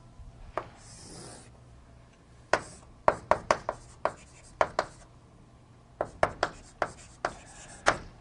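Writing on a classroom board, likely the drawing of a table: a soft scraping hiss about a second in, then a string of sharp taps and short strokes from about two and a half seconds on, at times several a second.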